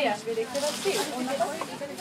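Soft hissing rustle of fabric being handled, rising about half a second in and fading after about a second, over voices in the shop.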